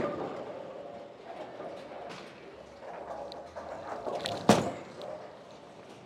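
A ten-pin bowling ball thuds onto the lane at the start and rolls, then crashes into the pins about four and a half seconds in, the loudest sound, over the steady din of a bowling alley.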